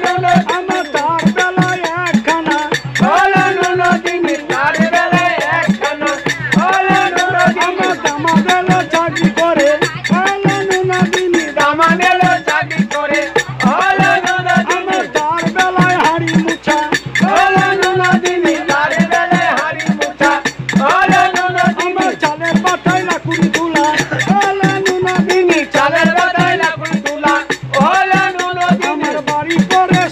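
A man sings a Bengali Satya Pir devotional folk song, accompanying himself on a two-headed barrel drum beaten in a steady quick rhythm.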